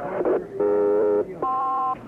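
Two-way radio dispatch alert tones: a buzzy steady tone for under a second, then after a short break a higher, cleaner two-pitch tone for about half a second. The tones announce an all-call broadcast to every car and department.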